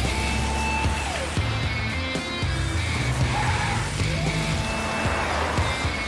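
Dramatic background music over the engine of a Mercedes-Benz SUV driving fast at night, with a held note that slides down in pitch about a second in.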